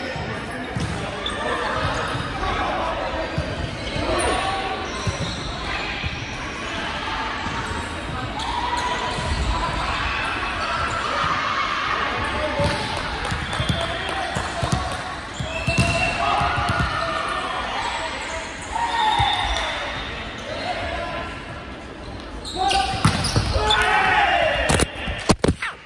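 Players' voices calling and chatting in an echoing sports hall, with scattered thuds of a volleyball bouncing on the wooden court floor. Near the end comes a cluster of louder sharp hits as a rally is played.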